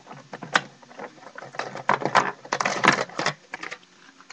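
Small hobby tools and parts being rummaged through by hand, a quick run of irregular clicks and clatters.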